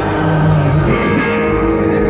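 Live rock band playing through a stage PA, with electric guitar chords held out over the band and no vocals in this stretch.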